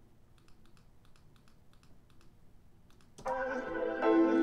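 Faint computer clicks, then about three seconds in a hip-hop beat starts playing back from an FL Studio project, opening on sustained chords.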